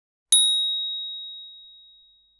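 A single bright, high ding about a third of a second in, as a logo-reveal sound effect. It rings on one clear tone that fades away over about two seconds.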